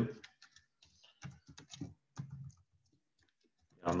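Computer keyboard typing and clicking, faint, in short irregular runs of keystrokes with gaps, stopping about three seconds in.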